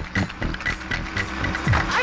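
Electronic Tamil film-song intro music with a steady beat. It builds toward the end, where falling synth sweeps come in.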